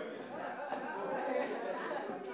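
Audience chatter in a large hall: many people talking at once as a crowd mills about and leaves.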